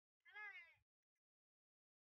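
A single short, high-pitched animal call, about half a second long, rising and then falling in pitch.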